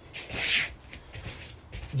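A short rustling swish about half a second in, from a person's body moving through a side strike: clothing and bare feet shifting on a mat.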